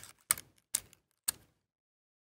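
Metal tweezers and paper against a cardstock card: three short, sharp clicks and taps about half a second apart as a die-cut paper leaf is tucked into place.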